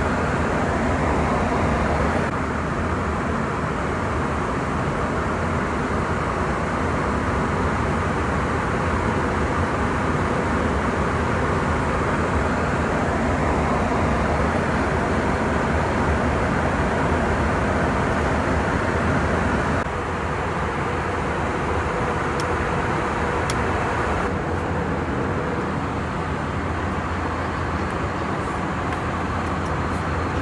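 Steady cabin noise of an Airbus A321 airliner in flight: an even, loud rushing roar from the engines and air streaming past the fuselage. Its level and tone shift slightly a few times, about two seconds in and again about two-thirds of the way through.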